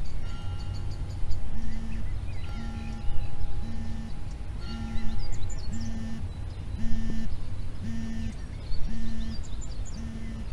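Birdsong, many small chirps and trills, over a low rumble, with a low tone beeping about once a second from a second or so in.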